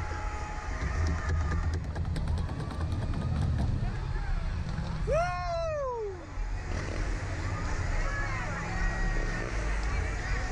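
Two riders' voices, mostly laughter and low talk, with one long vocal cry that rises and then falls about five seconds in. A steady low rumble runs underneath.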